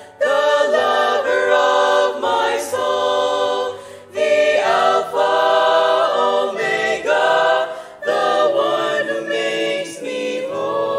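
Choir singing a worship song in several voice parts, in sustained phrases that break off about every four seconds.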